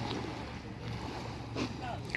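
Quiet seaside ambience: a steady low hum under a faint even hiss, with faint distant voices and a small knock near the end.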